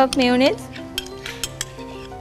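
Metal spoon clinking and scraping against a ceramic ramekin as thick mayonnaise is spooned out into a bowl, a string of light clicks, over soft background music. A brief, loud wavering tone sounds at the very start.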